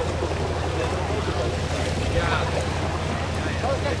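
A steady low hum with faint voices in the background.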